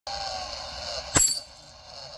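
A metal scratching coin set down on cardboard scratch-off tickets: a single clink about a second in, ringing briefly.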